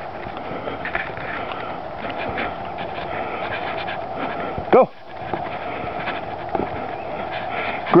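Steady hard panting from someone running with the camera, broken once just before five seconds in by a short voiced call.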